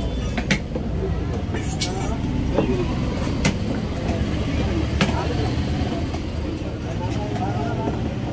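Large fish-cutting knife working a fillet on a wooden chopping block, with a few sharp knocks of the blade on the wood, over a steady low rumble and voices in the background.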